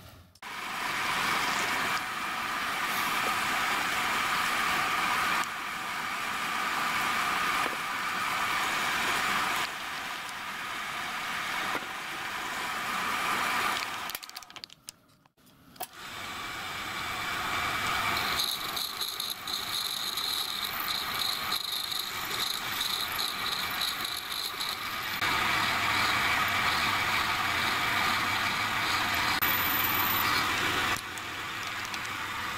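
Drill press running and drilling through clamped gunmetal connecting-rod brasses: a steady machine sound that drops out briefly near the middle, then resumes with a higher whine for several seconds.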